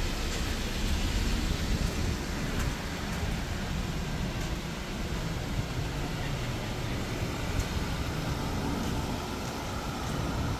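Steady outdoor background noise with a low rumble, like distant road traffic.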